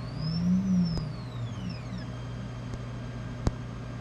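Anycubic resin 3D printer's Z-axis stepper motor whining as it moves the build plate, the pitch rising then falling over the first two seconds and settling into a steady tone, over a constant low hum. A sharp click sounds about three and a half seconds in.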